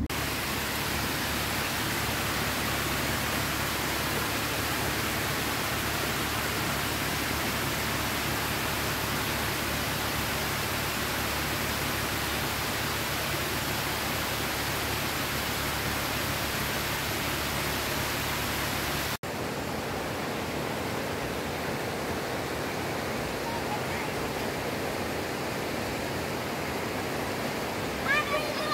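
Steady rush of a small waterfall spilling over a rock face. There is an abrupt cut about two-thirds of the way through, after which a similar steady hiss continues, slightly quieter.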